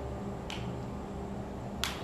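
Two short, sharp clicks about a second and a half apart, over a steady low room hum.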